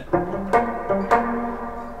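Semi-hollow electric guitar playing a short lick on the notes F, G and B-flat: a few picked notes that ring into each other.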